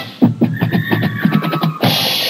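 Marching band's percussion section playing a quick run of drum strokes, with a couple of held notes above them, before the full band comes back in near the end.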